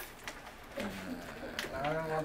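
A man's low voice: a drawn-out hum or held syllable about a second in, then the start of speech near the end, with a few faint clicks between.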